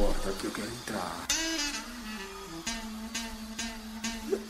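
Live pagodão band recording at low level between songs: a low bass hit fades away at the start, then indistinct voices over a single held low note until the singing comes back in.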